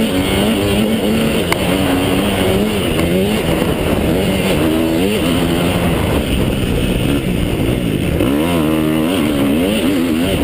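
KTM 250 SX-F four-stroke single-cylinder motocross engine at race throttle, revving up and down as the rider works the throttle and gears, with quick rapid rises and falls about halfway through and near the end.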